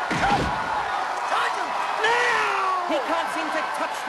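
Boxing punches landing as film sound effects, with heavy thuds just at the start, over an arena crowd shouting and yelling.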